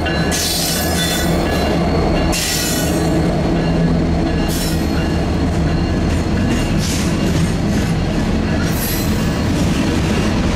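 A CN freight train passing close by: the trailing diesel locomotive goes by at the start, then freight cars roll past. Steel wheels on rail make a loud, steady rumble, broken several times by short high-pitched bursts.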